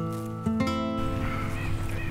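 Plucked acoustic guitar notes from the film score ring out and stop about a second in. They give way to a faint, even outdoor rustle.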